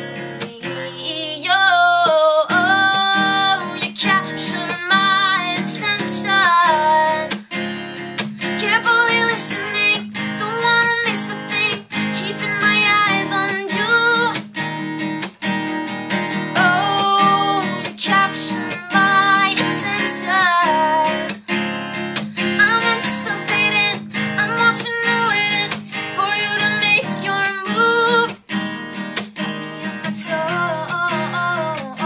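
A woman singing over an acoustic guitar strummed in a steady, even rhythm: a solo acoustic song performance on a Taylor acoustic guitar.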